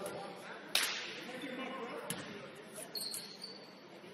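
Sharp impacts from a basketball game ringing out in a large gym: one loud crack about a second in and a weaker one about two seconds in, over distant voices, with a brief high squeak about three seconds in.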